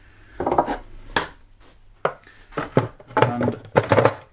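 Hard plastic canister-filter parts being handled and set in place: a string of irregular knocks and clatters, several close together in the second half.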